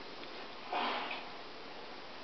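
A dog sniffing once through its nose, a short breath about three-quarters of a second in.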